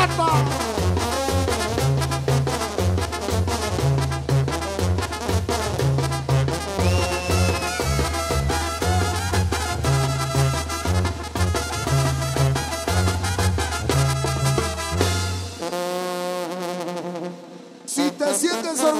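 Live brass band of trumpets, trombones, saxophones and sousaphone, with bass guitar and drums, playing an instrumental tune. About fifteen seconds in, the bass and drums stop and a held brass chord fades away.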